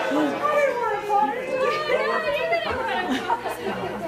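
Several people talking over one another: indistinct chatter, no single voice clear.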